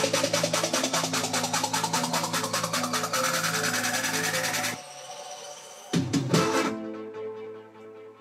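Future bass build-up played back through studio monitors: a fast drum roll over sustained synth chords with a rising sweep, which cuts off suddenly just under five seconds in. About a second later comes a short loud hit that fades away.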